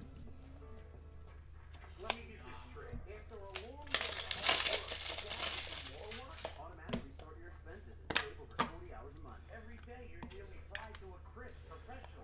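Plastic crinkling and rustling as a trading card is handled and put into a plastic holder, loudest in a burst around four to five seconds in, with several sharp plastic clicks. Faint music and voices run underneath.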